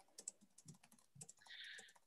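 Near silence with faint, scattered clicks at a computer, and a brief faint hiss near the end.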